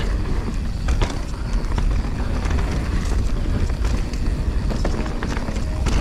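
Mountain bike rolling fast down a dirt singletrack: steady tyre noise and low wind rumble on the camera mic, with scattered light clicks and knocks from the bike over the ground. The bike itself runs very quietly.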